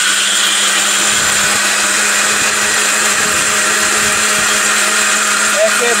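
Ricco electric mixer grinder running at a steady speed, its motor whirring with a constant hum as it grinds dried red chillies into a wet paste.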